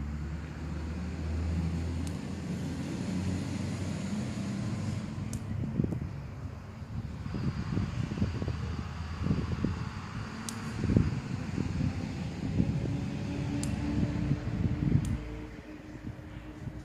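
Outdoor garden background: a steady low rumble for the first few seconds, then irregular low thumps and rustling from about six seconds in, with a few sharp clicks scattered through.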